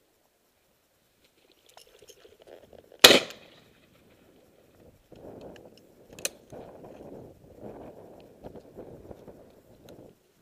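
A single shotgun shot about three seconds in, loud and sudden with a short echoing tail, at pheasants flushed from a hedgerow. A smaller sharp click follows about three seconds later, with low rustling around it.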